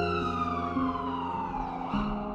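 Trailer music: a sustained tone with overtones glides slowly downward in pitch over a low steady drone, and new tones come in near the end.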